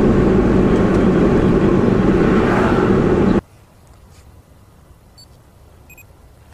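Steady engine and road noise of a car driving, heard from inside the cabin. It cuts off suddenly about three and a half seconds in, leaving only a faint hiss.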